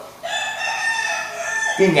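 A rooster crowing once, one long call lasting about a second and a half.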